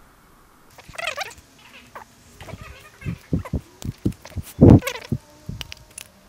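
Steel clutch plates of a mechanical limited-slip differential being lifted off and restacked by hand: a run of metallic clinks and scrapes, with a short squealing scrape about a second in and the loudest clack about three-quarters of the way through.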